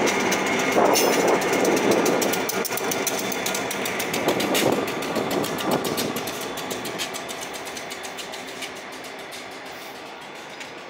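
Freight train's trailing pair of six-axle diesel locomotives passing close by and pulling away, wheels clicking rapidly over the rail joints. The sound fades steadily as they recede.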